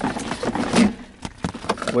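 Plastic center-console inner liner of a 2004 Toyota Sequoia being pried up with a plastic trim removal tool: a rapid, irregular run of clicks, snaps and knocks as the liner's clips work loose, with a louder knock a little under a second in.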